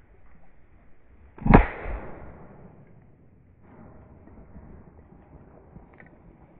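A single close shotgun shot about a second and a half in, with a fainter bang just after it, fired at waterfowl overhead.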